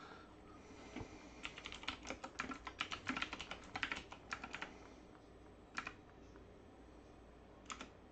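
Typing on a computer keyboard: a quick run of keystrokes lasting about three seconds, then two single key presses, one about a second later and one near the end.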